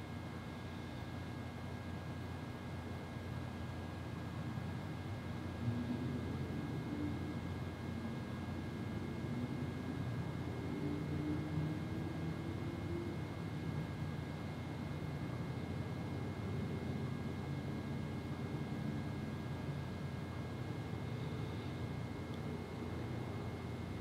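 Quiet room tone in a chapel: a steady low hiss with a faint thin high whine, and a faint low rumble that grows slightly louder about five seconds in.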